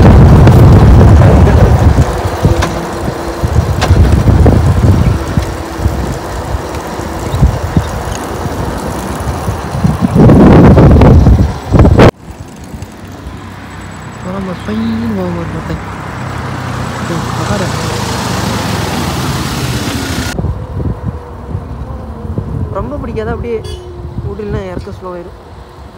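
Wind buffeting the microphone of a camera on a moving motorbike, very loud and heaviest in the low end, with a strong gust shortly before a sudden cut to a much quieter background.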